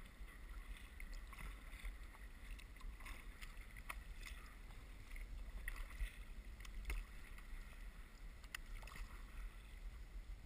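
Faint water sounds of a kayak under way: paddle water splashing and lapping against a skin-on-frame kayak's hull, with a steady low rumble and a few sharp ticks, about 4, 7 and 8.5 seconds in. Heard muffled through a GoPro's waterproof housing.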